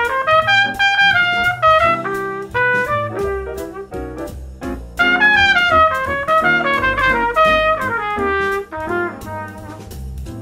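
Trumpet improvising a jazz solo in quick running lines, in two phrases, the second starting about halfway with a loud high run: a practice solo built only from major scales, their modes and chord arpeggios. Underneath runs a play-along backing track with a moving bass line.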